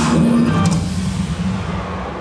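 Recorded dance-mix music with drums: a sharp hit at the start and a held low note, the music then fading away through the second half.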